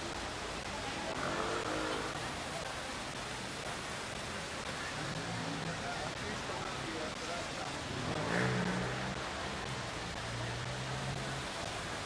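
Busy street-square ambience: a steady background wash with people's voices in the crowd and a car's engine running past, loudest about eight seconds in.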